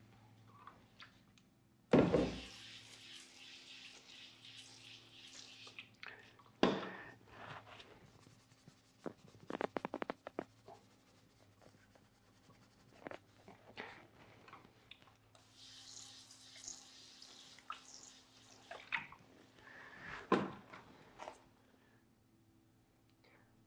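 Soft wheel brush scrubbing a wet wheel barrel with plain water: spells of bristle swishing, with a sharp knock about two seconds in and a few more knocks and splashes later, over a faint steady hum.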